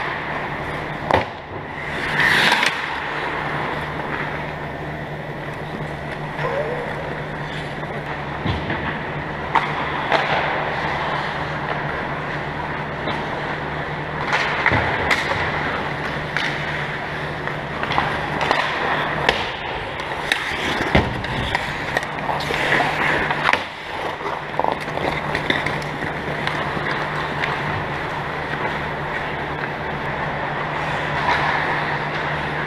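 Ice hockey skates scraping and carving on the ice, with sharp clacks of sticks and puck here and there, over a steady low hum in the rink.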